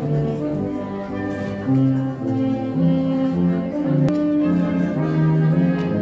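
Slow instrumental music with long held low notes that step from one pitch to the next.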